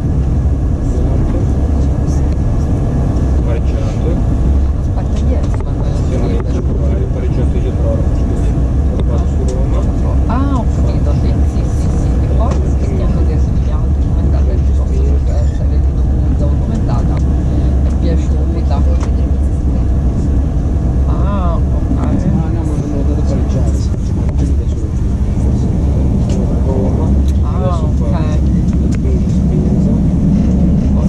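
Cabin noise of an ETR 460 electric tilting train running at speed: a steady, loud low rumble from the running gear and the rails. Voices are heard briefly now and then over it.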